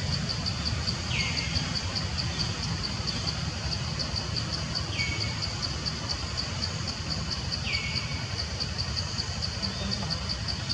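Forest ambience: a high-pitched insect chorus pulsing steadily about four times a second, with a short falling call three times and a constant low rumble underneath.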